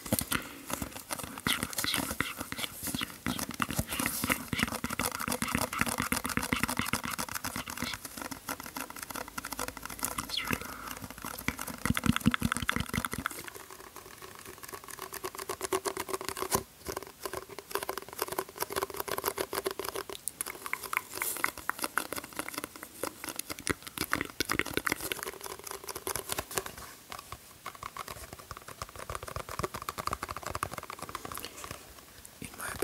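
A sponge squeezed and scrunched close to the microphone for ASMR: a dense, irregular crackling and squelching, with a run of louder, deeper squeezes about twelve seconds in.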